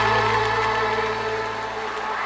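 A live trot band's closing chord, held and slowly fading at the end of a song, with an audience clapping along with it.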